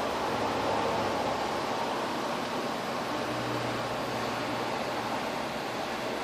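Steady, fan-like hiss of room noise, with a faint low hum briefly in the middle.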